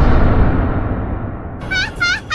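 Outro sound effects: a deep booming rumble dying away, then near the end a short high-pitched call that repeats as a fading echo.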